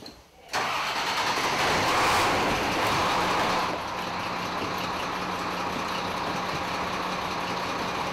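A fire truck's engine starting about half a second in and running loudly, then settling after a few seconds to a steady idle with a low hum.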